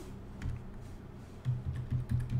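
Computer keyboard being typed on, a run of irregular keystrokes.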